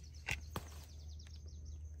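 Quiet background with a steady low hum and two light clicks about a quarter and half a second in, with faint high chirping.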